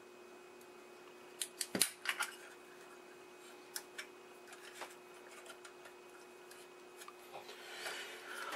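Light metallic clicks and clinks of hands handling the copper-plated metal chassis of an old TV booster. A cluster comes about one and a half to two and a half seconds in, then a few fainter ones, over a faint steady hum.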